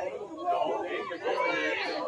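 Indistinct chatter of people talking, with no music playing.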